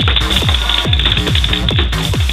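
Electronic dance music with a steady, fast kick-drum beat, a little over two beats a second.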